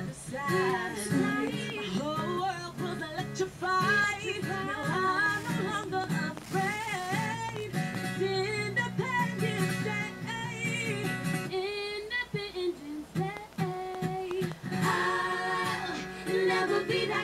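Female vocal group singing in harmony over acoustic guitar, an unplugged pop performance. The low accompaniment drops out about twelve seconds in, leaving mostly the voices.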